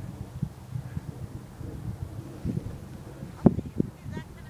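Wind buffeting the microphone outdoors: an uneven low rumble with soft bumps, and a few sharper thumps near the end, the first of them the loudest.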